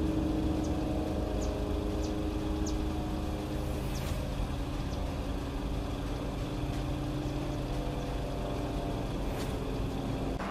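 An engine running steadily: a constant hum of several even tones over a low rumble. A few short, faint high chirps sound in the first three seconds.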